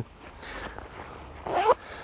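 Zipper on a Helikon-Tex Possum nylon waist pack being pulled: quiet at first, then a short, louder pull about a second and a half in.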